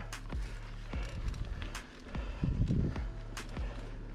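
Mountain bike rolling over a bumpy dirt trail: irregular rattles and knocks from the bike, over a low steady hum, with music underneath.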